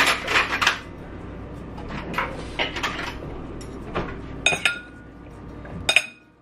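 Chopped zucchini, mushrooms and bell pepper being tossed in a bowl with a tamari and balsamic vinegar marinade: a few short clinks and knocks against the bowl, one cluster at the start, another about two and a half seconds in and another about four and a half seconds in.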